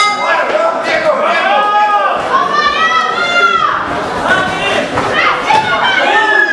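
People shouting loudly around a boxing ring, long drawn-out calls that echo in a large hall, with a brief sharp hit at the very start.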